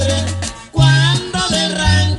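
Norteño music playing, a melody line over a steady bass, with a brief drop in loudness a little past the middle.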